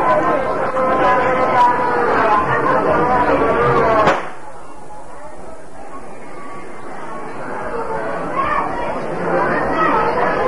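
Crowd of men's voices, many speaking at once. It is loud at first, cuts off suddenly about four seconds in to a quieter murmur, and swells again near the end.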